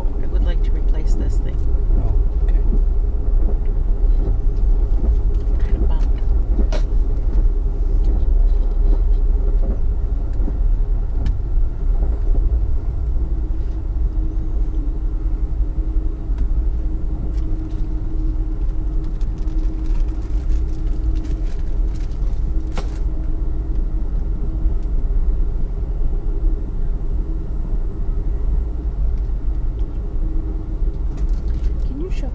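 Steady low rumble of an Amtrak passenger train car rolling along the rails, heard from inside the car, with scattered faint clicks and a faint steady hum that grows stronger from about the middle on.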